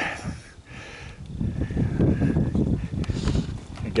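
Wind buffeting the microphone outdoors: an uneven low rumble that drops away briefly early on, then builds and gusts again from about a second and a half in.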